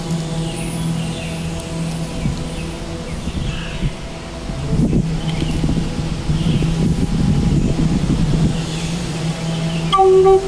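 A steady low drone holding one pitch, with rougher noise in the lows from about five seconds in.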